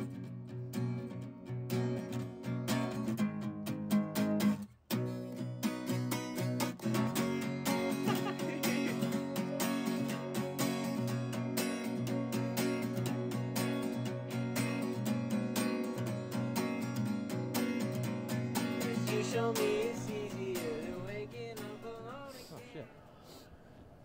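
Song with a strummed acoustic guitar, dropping out briefly about five seconds in; a singing voice comes back in near the end.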